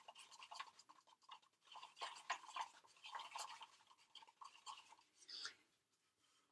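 Faint, quick, irregular scraping of a mixing stick stirring a wet Ultracal gypsum cement and water mix in a cup, working it around the sides and bottom.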